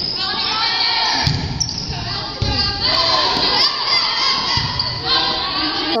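Girls' volleyball match in a gymnasium: overlapping voices of players and spectators calling and cheering, echoing in the hall, with a few dull thumps of the ball being hit or striking the floor.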